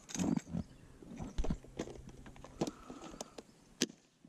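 A short burst of laughter, then scattered small clicks and taps of a phone being handled, with one sharp click near the end.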